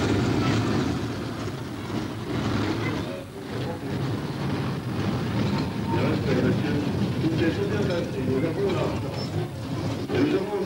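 A small amusement-park train running past, its steady rumble mixed with the voices of people talking. The voices come through more clearly in the second half.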